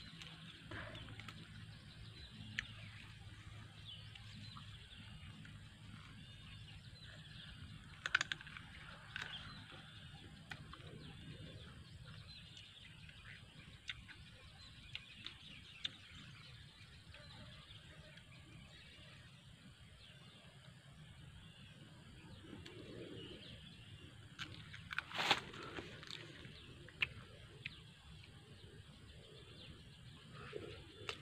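Faint outdoor background of birds chirping, with a few short sharp clicks: one about eight seconds in, and the loudest about twenty-five seconds in.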